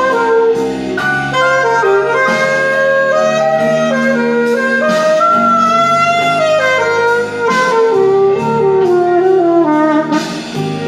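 Mandalika saxophone playing a blues solo over a backing track: phrases of held and stepping notes, the line sinking lower near the end.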